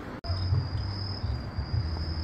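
Cicadas singing: a steady, high-pitched drone that starts abruptly just after the start, over a low rumble.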